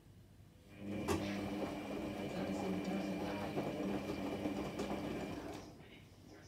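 Electra Microelectronic 900 washing machine's motor turning the drum for a wash tumble. A steady hum starts under a second in, with a sharp click just after, and stops shortly before the end.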